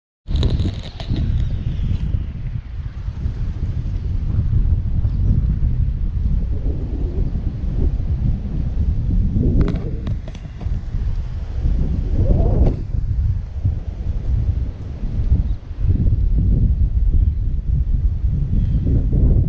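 Wind buffeting the microphone: a loud, gusting low rumble that surges and drops throughout.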